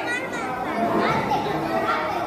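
Children's voices chattering and calling out at play, several at once.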